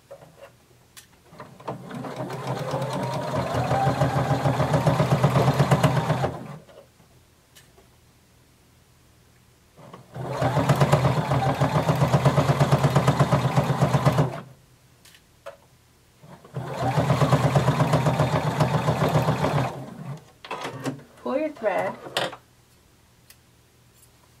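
Computerized sewing machine stitching a dart in knit fabric, in three runs of rapid stitching a few seconds each, the first speeding up as it goes. Brief pauses between the runs hold small clicks.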